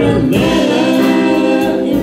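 Live blues-rock band playing: sung vocals hold a long note over drums and electric guitar, breaking off just before the end.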